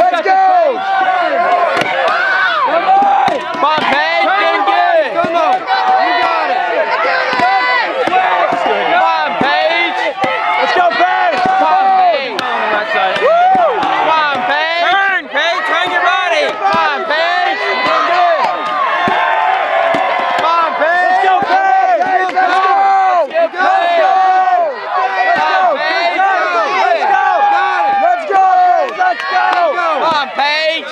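Many spectators shouting and yelling encouragement at once, voices overlapping without a break. Under the shouting, an axe strikes again and again into a yellow-poplar cant being chopped underhand.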